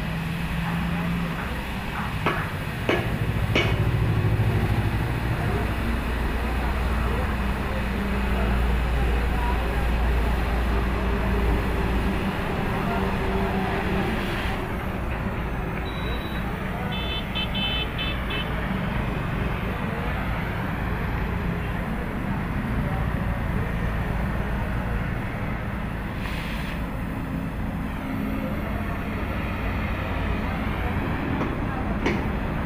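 Oxy-fuel cutting torch hissing as it cuts through steel angle iron. The hiss drops away about halfway through when the torch is lifted off the work. Road traffic runs underneath, with a brief beeping a couple of seconds after the hiss stops.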